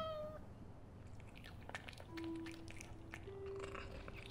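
A house cat's meow falling in pitch and trailing off at the very start, followed by a few faint clicks as the ginger tabby paws at the wall. Soft background music holds long, steady notes from about halfway through.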